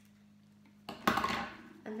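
Scissors cutting jute twine: one short, sharp snip about a second in.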